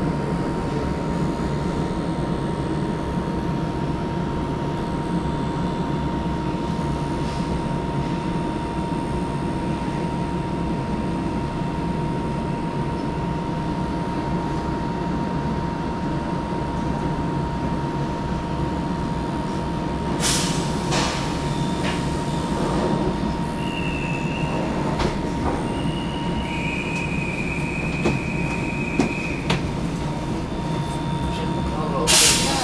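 Train running on rails: a steady rumble with a constant whine. In the last third come a few sharp clacks and several short, high-pitched wheel squeals.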